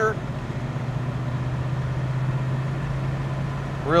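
Big-block V8 of a 1971 Chevrolet Chevelle SS heard from inside the cabin, running at a steady engine speed: a low, even drone that neither rises nor falls.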